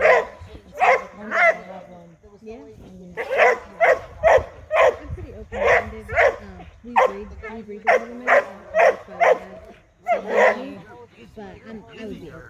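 Young Airedale terrier barking repeatedly at a helper's bite pillow during bite-work training, about fifteen sharp barks in uneven bursts with short pauses between them.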